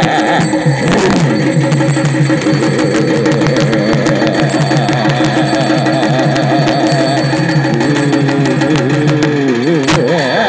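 Live folk dance music: fast, dense drumming under a wavering melody line that bends and glides in pitch more near the end.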